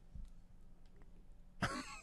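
Faint room tone, then one short cough from a person at a microphone near the end.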